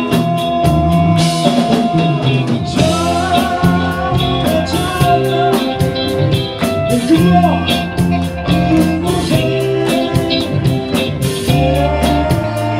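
Live rock band playing: electric guitars, bass and drum kit with a steady hi-hat beat of about four ticks a second, under a male lead singer singing held notes into a microphone.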